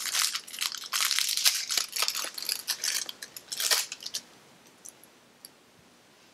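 Small clear plastic bag crinkling and rustling in the fingers as it is opened and a pair of earrings taken out. The crinkling stops about four seconds in, followed by a couple of faint ticks.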